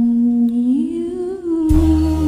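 A singer humming a long held note that slides up to a higher pitch a little under a second in. Near the end the band accompaniment comes in loudly with bass.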